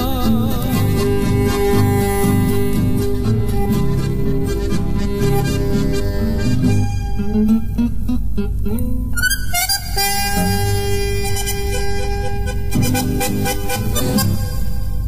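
Instrumental passage of a chamamé played by a Correntino band: accordion and bandoneón carry the melody in sustained reed tones over guitars keeping the rhythm. A quick upward run of notes comes about nine to ten seconds in.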